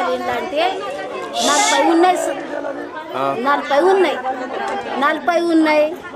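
A woman speaking, with other voices chattering around her.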